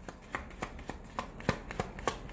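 A deck of tarot cards being shuffled by hand: an irregular run of soft card snaps and clicks, the sharpest about three-quarters of the way through.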